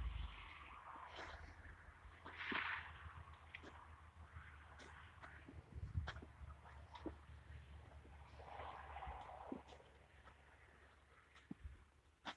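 Quiet walking sounds from someone carrying a hand-held phone: faint, irregular footstep clicks and handling noise over a low rumble, with a brief rustle about two and a half seconds in and another around nine seconds.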